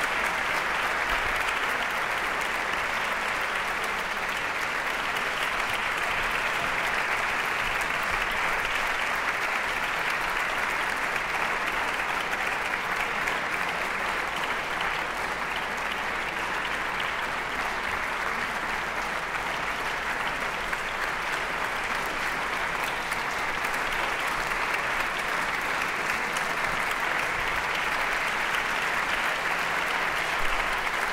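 Audience and orchestra musicians applauding, a dense, even clapping that holds steady throughout.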